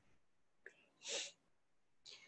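Mostly quiet: a faint click a little past half a second in, then a short, soft breath noise from the lecturer about a second in.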